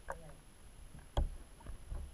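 Bathwater sloshing around a camera held at and under the surface, heard muffled as if partly underwater, with one sharp knock about a second in.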